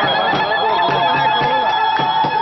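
Women ululating: a long, high, trilling cry that starts about half a second in and is held steady, over a crowd singing to a regular beat.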